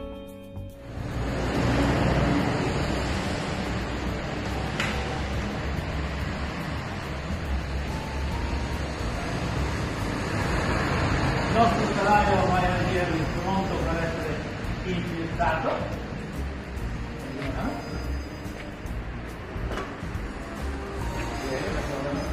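Live workshop sound: a steady rumbling room noise, with men's voices talking briefly around the middle and again near the end.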